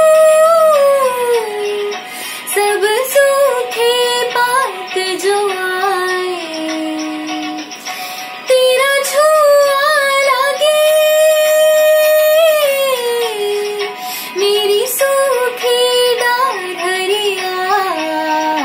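A teenage girl singing a melodic song solo, holding long notes and sliding between pitches in ornamented phrases. She breaks between phrases about two and eight seconds in, and comes back in strongly just after the second break.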